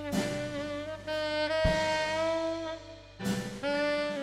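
A live band's horn section, saxophones and trumpet, plays held notes together over drums. The horns play in phrases, each one starting on a drum hit, with a short break about three seconds in before the next phrase.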